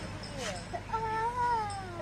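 A single drawn-out animal call, starting about a second in and lasting about a second, its pitch rising slightly and then falling away.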